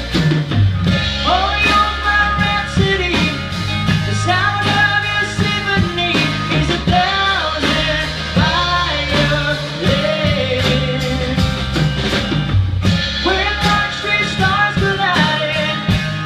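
Live rock-country band music: a male lead voice sings over a drum kit, electric guitar and bass.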